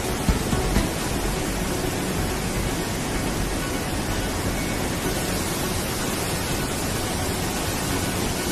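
Steady rush of fast-flowing water pouring through a dam's sluice channel, an even, unbroken noise.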